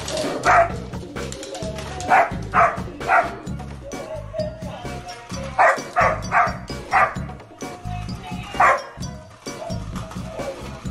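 A dog barks about nine times, singly and in quick groups of two or three, over the tinny song and steady beat of a dancing robot dog toy.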